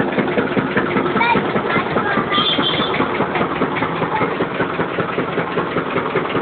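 Engine of a sugarcane juice crushing machine running steadily while the cane is being pressed.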